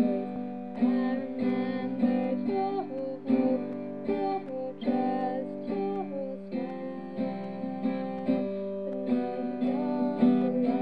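Acoustic guitar strumming chords in a steady rhythm: the song's backing music.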